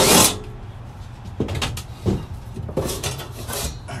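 Sheet-metal access panel of a gas furnace being worked loose and pulled off: a short burst from a cordless drill right at the start, then scattered scrapes and knocks of metal on metal.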